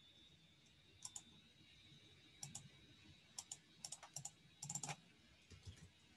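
Faint clicking of a computer mouse and keyboard, about a dozen short clicks, many in quick pairs, as points of a selection are placed and the selection is cut.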